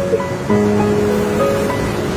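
Slow background music of held chords, moving to a new chord about half a second in, over a steady hiss.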